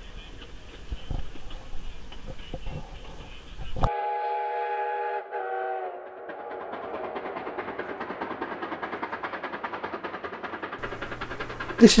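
Faint rumble of the moving passenger train for about four seconds. Then a Durango and Silverton coal-fired steam locomotive's multi-note whistle sounds one long and one short blast, followed by the quick, even chuffing of its exhaust as it works toward the camera on a runby.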